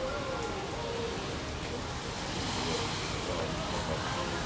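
Outdoor street ambience: a steady rushing noise that brightens in the second half, with faint voices in the background.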